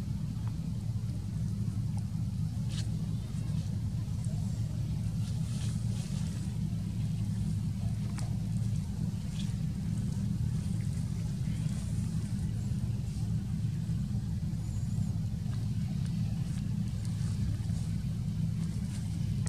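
A steady low motor drone runs throughout, with a few faint short clicks high above it.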